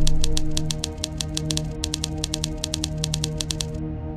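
Typewriter-style typing sound effect: rapid key clicks, about eight a second, with a brief break just before halfway, stopping shortly before the end. Underneath runs a steady, sustained music drone.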